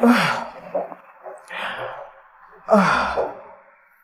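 A woman heaving three loud, breathy sighs, each about a second or so apart; in the first and last her voice falls in pitch as she breathes out.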